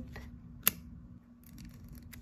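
Tombow Mono 2way correction tape dispenser drawn across paper: a faint scratchy rasp with one sharp click about two-thirds of a second in.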